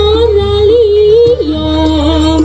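Live East Javanese jaranan (kuda lumping) gamelan music: a held, wavering high melody line that slides down to a lower note about one and a half seconds in, over a steady low drone and light percussion.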